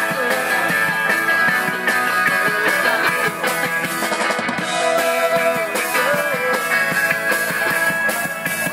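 Live rock band playing an instrumental passage: electric guitars and a drum kit keeping a steady beat, with a melody of held and bending notes over it.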